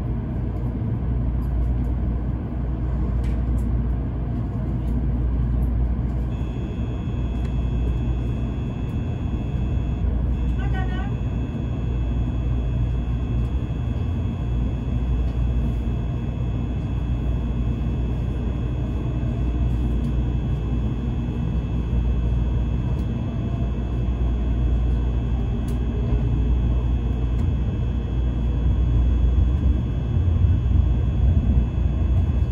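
Inside an N700 series 7000-series Shinkansen as it moves off and runs: a steady low rumble, joined about six seconds in by a steady high whine. Around eleven seconds there is a short run of falling tones.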